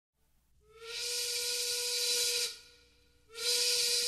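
Two breathy blasts of a steam whistle, a steady tone under a loud hiss. The first lasts nearly two seconds, and the second starts about three seconds in.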